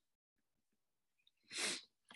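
Near silence, then about one and a half seconds in a man's single short, sharp intake of breath, without voice.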